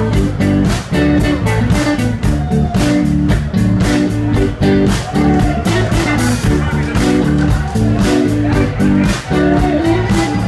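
Live blues band playing: electric guitar and bass guitar over a steady drum beat.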